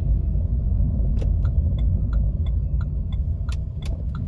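Low, steady road rumble inside a moving car's cabin, with a turn-signal indicator ticking evenly about three times a second from about a second in.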